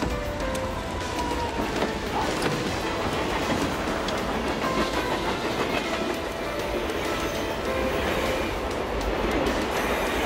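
Steady, dense rumbling noise with faint high tones over it, growing slightly louder in the second half, mixed with music.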